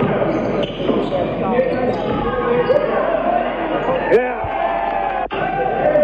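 Live sound of an indoor basketball game: the ball bouncing on the hardwood court, many short sneaker squeaks, and indistinct players' voices, all echoing in a large gym.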